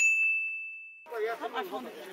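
A single electronic ding sound effect: one clear, high tone that starts sharply and rings for about a second as it fades. Faint voices follow from about a second in.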